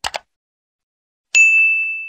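Two quick mouse clicks, then a single bright bell ding about a second and a half in that rings on and fades away: the sound effect of a subscribe button being clicked and the notification bell appearing.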